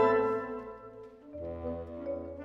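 Concert wind band holding a loud sustained brass chord, French horns prominent, which dies away over the first second; a softer, lower sustained chord enters about a second and a half in.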